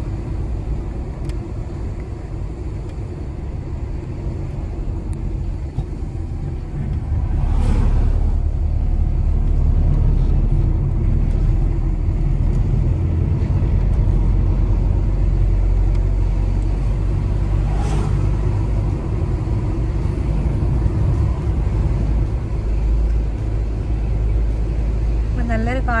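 Car driving, heard from inside the cabin: a steady low rumble of engine and tyres that grows louder about seven seconds in, with two brief swishes, at about eight and eighteen seconds.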